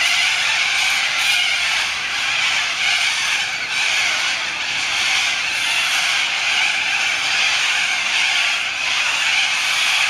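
A large flock of cockatoos screeching and chattering together in the treetops: a loud, unbroken din.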